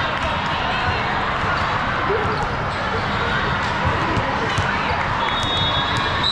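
Volleyball hall din: a constant murmur of many voices with repeated sharp smacks and thuds of volleyballs being hit and landing. A steady high tone starts near the end.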